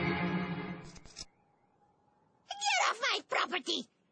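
Cartoon background music fades out about a second in. After a short quiet gap, a cartoon character's voice gives four short, high cries, each falling in pitch.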